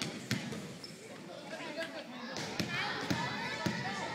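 A basketball being dribbled on a hardwood gym floor, its bounces ringing in the large hall: one bounce about a third of a second in, then a run of bounces about half a second apart in the second half.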